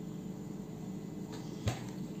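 Quiet room tone with one short, sharp click near the end.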